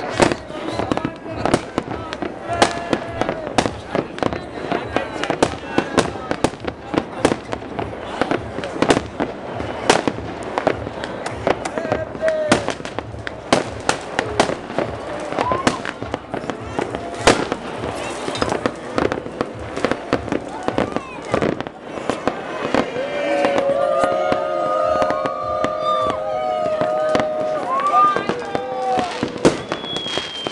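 New Year's fireworks and firecrackers going off all around in many closely packed sharp bangs and cracks. In the last third, a steady tone on several pitches is held for about five seconds over the bangs.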